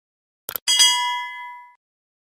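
Subscribe-button animation sound effect: a quick double mouse click, then a notification bell ding that rings for about a second and fades away.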